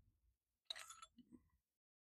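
A short run of faint metal clinks a little under a second in, from the engine's steel and aluminum push rods being handled and knocking together; otherwise near silence.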